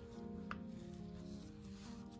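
Soft background music with slow held notes. A single light tap about half a second in, and a soft rubbing sound near the end, from the canvas and stylus being handled.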